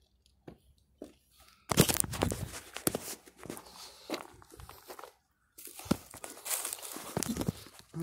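Phone handling noise as the phone is picked up: fingers rubbing and knocking against the microphone in loud, crackly spells, with a short break a bit past halfway.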